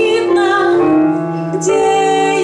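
A woman singing a slow song, holding long notes, accompanied by her own piano-sound playing on a Korg digital keyboard.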